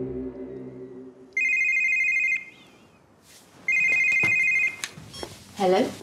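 A telephone ringing twice, each ring a trilling electronic tone about a second long.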